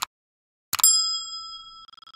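Subscribe-button animation sound effects: a short mouse click, then about three quarters of a second in another click and a bright bell-like ding that rings and fades. Near the end the chime turns into a rapid fluttering ring, the notification-bell sound.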